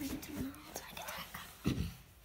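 Faint whispering with small handling clicks, and a low thump near the end.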